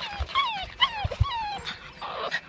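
Puppies whimpering: a run of about six short whines, each sliding down in pitch, with a few soft low knocks underneath.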